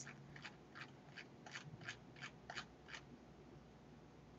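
Faint, evenly spaced clicks of a computer mouse's scroll wheel, about three a second, as a web page is scrolled down.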